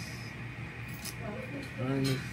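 Restaurant room tone with a steady hum and faint background voices, a single light click about a second in, and a voice starting to speak near the end.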